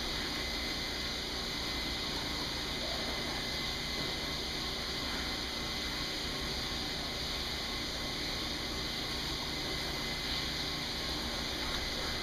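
E/One 1-horsepower grinder pump running submerged in a water tank, a steady, even running noise as its grinder cuts a cotton T-shirt into shreds.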